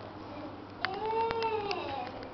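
A girl's drawn-out, high-pitched wordless vocal sound starting about a second in, rising and then falling in pitch in one long arch, with a few light clicks.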